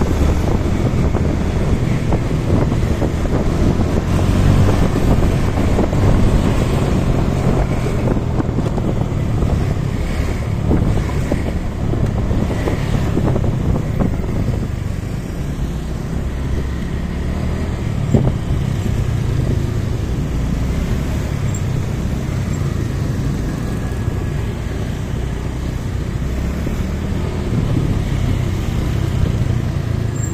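Wind rushing over the microphone of a moving motorcycle, with the engine running steadily underneath along with road noise.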